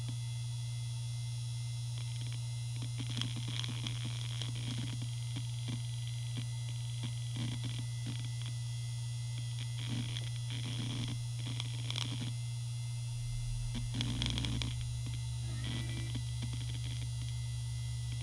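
Maxtor D740X-6L 3.5-inch 7200 rpm IDE hard drive spinning with a steady low hum, with irregular bursts of head-seek chatter while a program loads from it. The seeking starts about three seconds in, comes in clusters, is busiest around fourteen seconds in, then dies down.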